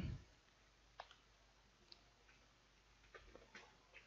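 Faint computer mouse clicks against near silence: a single click about a second in, another near two seconds, and a few quick clicks a little past three seconds.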